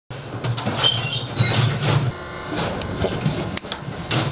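Hydraulic cattle squeeze chute being worked: a low steady hum from its hydraulics for about the first two seconds, with several metal clanks and a squeak of steel gates moving.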